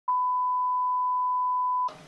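A single long, steady electronic beep: one pure high tone lasting nearly two seconds that starts abruptly and cuts off sharply.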